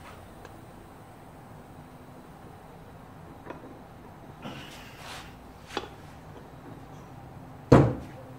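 Stihl 028 chainsaw crankcase halves being handled and pressed together by hand: a few light clicks and a short scrape, then one sharp knock near the end, the loudest sound.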